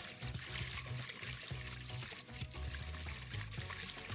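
Liquid sloshing and swirling as a whisk is stirred by hand in a glass mixing bowl to dissolve yeast in water, over background music with a steady bass line.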